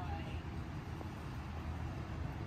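Steady low outdoor background rumble, with a faint voice-like sound at the very start and a small click about a second in.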